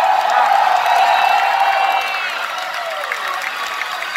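A concert crowd cheering and screaming, many voices holding long shouts and whoops over one another; the cheering eases a little about halfway through.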